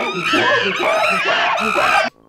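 A loud burst of many overlapping shrill, wavering cries, like a sound effect dropped onto the cut. It starts and stops abruptly.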